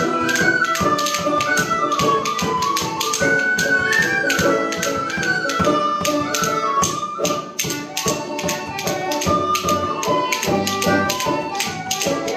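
Irish traditional ensemble playing a mazurka: tin whistles carry a high melody over a banjo, with a steady tapping beat from bodhrán and hand percussion.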